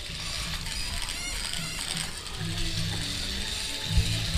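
Remote-control snake toy's small gear motor running as its jointed plastic body wriggles along, a steady mechanical whirr.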